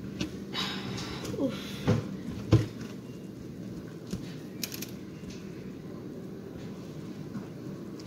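Quiet kitchen work cutting cookie dough: a few short scrapes and two sharper knocks about two and two and a half seconds in, as the blade meets the surface beneath.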